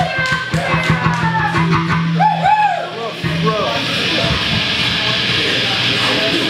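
Live rock band: electric guitar playing bent, wavering notes over drums and a held low bass note. The playing stops about halfway through and gives way to a steady wash of noise.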